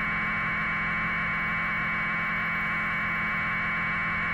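Steady hiss of static with a low hum under it, from a live broadcast audio feed. The hiss cuts in suddenly at the start and holds level throughout.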